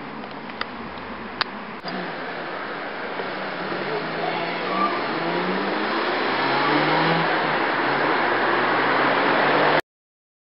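Road traffic: a car engine's note slowly rising as it accelerates, the noise growing louder from about two seconds in, then cut off abruptly just before the end.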